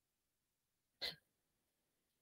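Near silence, broken about a second in by one short vocal noise.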